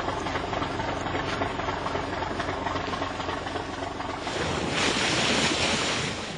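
Motorboat running at cruising speed at sea: a steady engine hum under the rush of water along the hull. A little past four seconds in, a louder hiss of spray thrown off the bow takes over.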